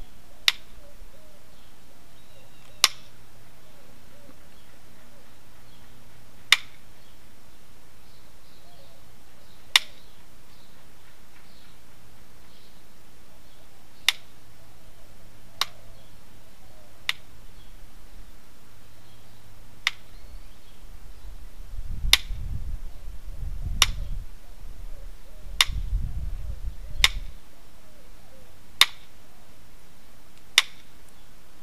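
Flintknapping strikes on a stone preform: about a dozen sharp clicks, spaced irregularly one to four seconds apart, each one a blow that takes a flake off the preform's edge.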